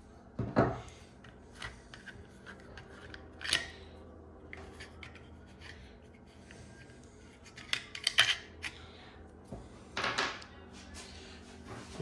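Hex key unscrewing small screws from the Z-axis top plate of a CNC machine, with scattered light metallic clicks and scrapes and a short cluster of sharper clicks about eight seconds in.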